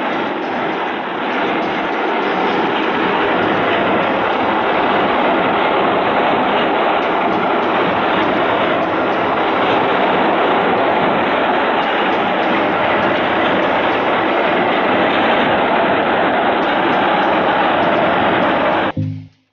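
Small air-cooled petrol engine with a recoil pull-starter, fitted to a homemade helicopter, running steadily. It is slightly quieter for the first second or two.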